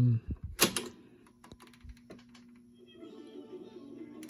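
A Revox A77 reel-to-reel tape recorder's transport is switched on with a sharp button click. The reels then run with a steady hum, and from about three seconds in a rougher noise builds that sounds a bit strange.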